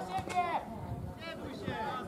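Unclear, distant shouts and calls of players and onlookers across an open football pitch, several voices overlapping.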